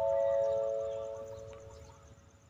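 Chime playing a descending four-note figure: each note rings on steadily and overlaps the next, and the last notes die away about a second and a half in.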